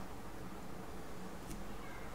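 Quiet room tone: a steady low hiss, with one faint click about one and a half seconds in.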